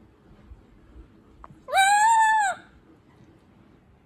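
A pet lory gives one loud drawn-out squawk of just under a second, nearly two seconds in. Its pitch rises, holds, then drops away at the end.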